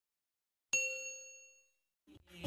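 A single bell-like ding sound effect, starting just under a second in and fading away over about a second: the notification-bell chime of a subscribe-button animation.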